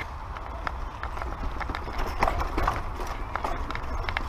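Mountain bike rattling over rocky dirt singletrack: irregular clicks and knocks from the bike's frame, chain and parts as the tyres hit rocks and roots, over a steady low wind rumble on the microphone.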